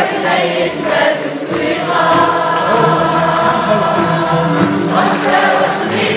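Live Arabic orchestral music: a mixed choir singing with a string orchestra, holding one long chord through the middle.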